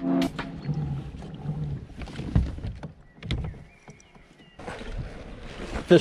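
Intro music cutting off, then faint scattered knocks and clicks. About three-quarters of the way through, the steady hiss of wind and water around a fishing kayak on a lake comes in.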